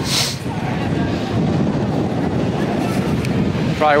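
Wind buffeting the microphone of a walking camera: a steady, rough low rumble with a brief hiss at the start.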